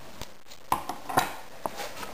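A few small, sharp clicks and taps from hands handling a coleus cutting beside small glass jars of water, the loudest about two-thirds of a second in.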